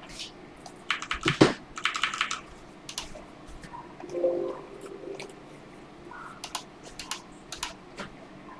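Typing on a computer keyboard: irregular clicks and taps, with a quick run of keystrokes about a second in and then scattered single clicks.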